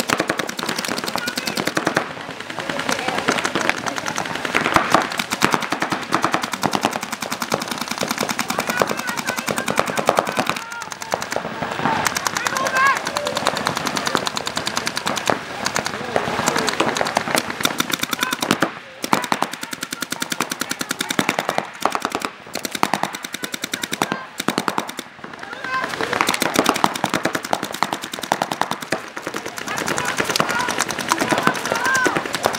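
Paintball markers firing in rapid, near-continuous strings of shots, many a second, with brief lulls a few times in the second half.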